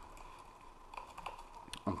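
Computer keyboard typing: a quick run of light keystrokes, thickest from about a second in.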